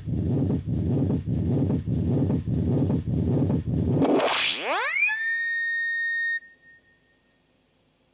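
Live band music with heavy pulsing drums and bass at about three beats a second. About four seconds in, it gives way to a steep upward electronic pitch sweep that settles into a held high tone, then cuts off suddenly, leaving near silence.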